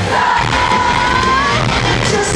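A rock band playing live, heard through a phone's microphone from among the audience. The female lead singer holds one long note over the band, rising slightly at its end.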